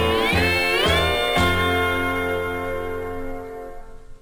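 Country band's closing bars: a steel guitar slides upward twice into the final chord, which is held and slowly fades away.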